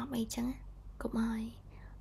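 Speech: a fairly high-pitched voice saying two short phrases about a second apart, with quiet pauses between.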